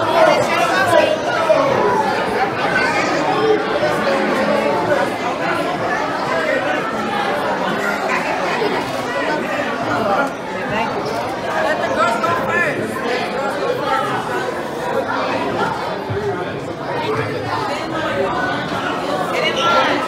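Steady chatter of many overlapping voices, children and adults together, with no single speaker standing out.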